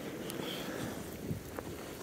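Steady storm wind rushing over the microphone, with a few faint soft clicks of footsteps in snow.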